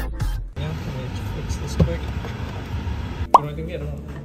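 Background music cuts off about half a second in, giving way to restaurant ambience with indistinct chatter. A single sharp click or clink rings out briefly near the end.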